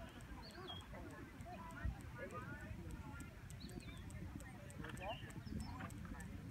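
Faint hoofbeats of a ridden horse moving on the arena's sand footing, under quiet bystander voices and occasional bird chirps.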